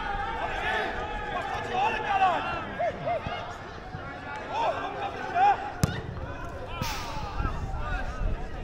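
Players' distant shouts and calls across an outdoor football pitch, with one sharp thud of a football being kicked about six seconds in.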